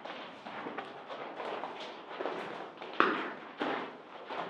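Footsteps crunching irregularly on the rough, gravelly floor of a rock tunnel, with one louder thump about three seconds in.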